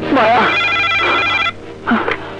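Desk telephone ringing: one warbling electronic ring lasting about a second, starting about half a second in.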